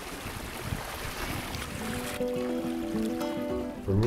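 Rushing wind and water as two lashed-together sailing canoes move under sail, fading about halfway through as music with long held notes comes in.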